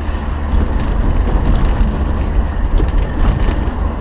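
A moving car heard from inside the cabin: a steady low road-and-engine rumble with a noisy hiss of wind and tyre noise over it.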